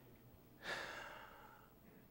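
A man's single audible breath out, like a sigh, close to the microphone. It starts suddenly a little over half a second in and fades away over about a second.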